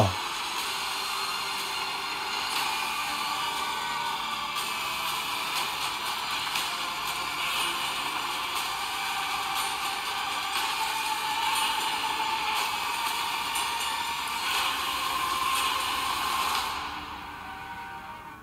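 Movie trailer soundtrack: dramatic music and a dense, steady wash of effects, thin-sounding with little bass. It drops away sharply about a second before the end.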